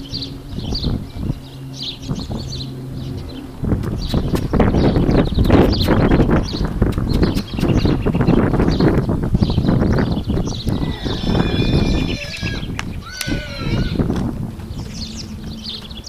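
Hoofbeats of a Nokota horse walking under saddle on a dirt pen floor, with birds chirping. From about four seconds in, a louder rushing noise covers much of it, and there are a few gliding calls near the three-quarter mark.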